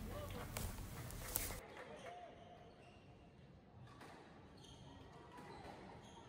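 Faint sounds of a squash rally: a few sharp knocks of the ball off racket and walls in the first second and a half, and short squeaks of shoes on the wooden court floor.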